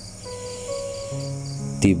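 Calm background music: soft sustained notes enter one after another over a high, evenly pulsing cricket-like chirp, about five pulses a second. A spoken voice comes in near the end.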